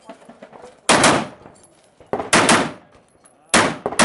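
Semi-automatic AR-style rifle firing three loud shots, about a second and a quarter apart, each with a short echoing tail.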